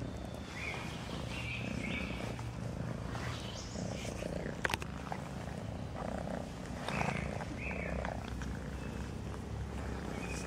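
Domestic cat purring steadily while being stroked, with a few short high chirps and one sharp click a little before halfway.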